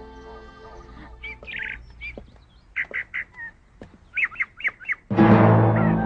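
Birds chirping, a few quick calls at a time in three or four groups, over faint background music. Louder soundtrack music comes in about five seconds in.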